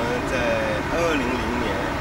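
Steady outdoor city traffic noise, a constant hum and hiss, with a faint voice over it.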